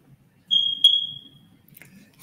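A single high-pitched beep starting about half a second in, holding for about a second and then fading away, with a sharp click partway through.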